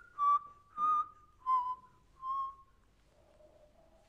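Solo violin playing four detached bowed notes, each starting crisply and falling slightly in pitch, about two a second. They are followed by a softer, lower note and a faint higher one near the end.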